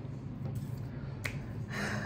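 A single sharp click, like a finger snap, about a second in, then a short breathy hiss near the end, over a steady low hum.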